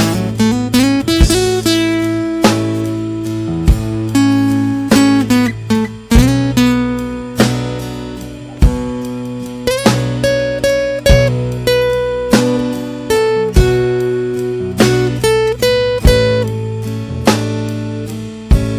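Instrumental break of a slow country-soul ballad: a guitar plays a lead melody with bent notes over a bass line and a slow, steady beat.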